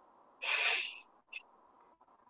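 A short, breathy exhale or sigh into a microphone, lasting under a second, followed by a brief click.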